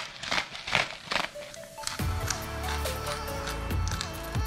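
Salt and pepper being shaken from shakers: a few quick, irregular rattling strokes over the first two seconds. About halfway through, background music with a steady bass comes in.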